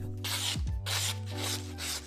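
Steel knife edge stroked along a 3-micron diamond strop: about four quick rasping strokes, refining the sharpened edge after the burr has been removed.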